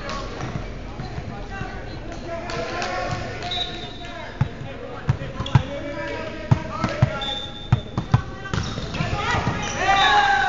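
Players' voices in a gym, with about ten sharp thumps of a volleyball bouncing on the hardwood floor, mostly in the middle of the stretch, between about four and eight seconds in.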